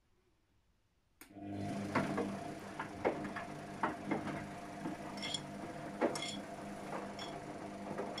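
Luxor WM 1042 front-loading washing machine in a rinse: after a short silence there is a click about a second in, and the drum motor starts, humming steadily as the drum tumbles the wet load. Water sloshes and the load knocks irregularly, with a few sharp clicks.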